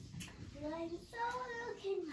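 A toddler's high voice singing a few drawn-out, wordless notes, ending in a falling glide.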